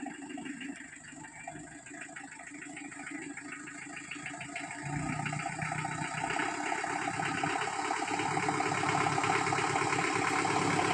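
A 4x4 jeep's engine running at low speed as the jeep crawls up a dirt track, its steady pulse growing louder as it approaches, noticeably stronger and deeper from about halfway through.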